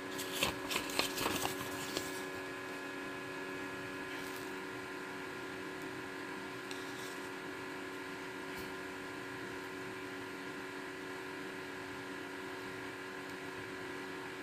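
A folded paper instruction leaflet rustling and crinkling as it is handled, for about the first two seconds. After that only a steady background hum of several even tones remains.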